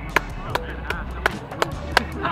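Background music with a sharp, steady beat of about three clap-like hits a second, with faint voices underneath.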